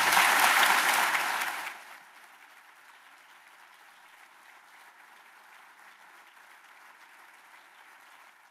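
Large audience applauding, loud for the first couple of seconds, then dropping suddenly to a much fainter, steady clapping.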